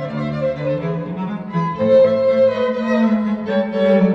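A string quintet of three violins, viola and cello playing classical music, with sustained bowed notes over a moving cello bass line. It gets louder about halfway through.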